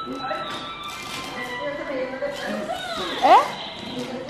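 Television film soundtrack: background music with dialogue, and a short, loud rising sound about three seconds in.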